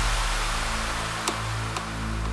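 Bass house track with the beat out: a hiss sweep fades away over held bass and synth notes, and two short clicks come about half a second apart near the end.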